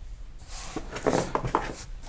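Hand rummaging among items inside a cardboard box: soft rustling with a few light knocks, busiest about a second in.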